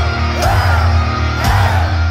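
Live heavy metal band playing loud through a concert PA, heard from the crowd, with a heavy bass and a big drum hit about once a second. A vocalist yells over it.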